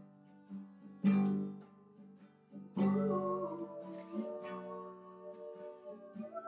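Acoustic guitar strummed in an unhurried accompaniment, with two strong chords, about one and three seconds in, left to ring out.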